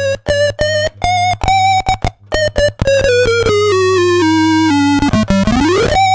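Soviet vintage toy synthesizer played on its touch keys: a run of short, separate notes, then a stepwise descending line of longer notes and a quick upward pitch swoop near the end. Under the notes runs the synth's steady low hum.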